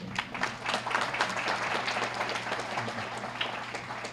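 Audience applauding, starting at once, fullest about a second in and thinning out toward the end.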